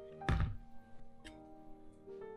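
A single dull thunk about a third of a second in, as the plastic plate is set against the wooden table, over solo piano music playing steadily.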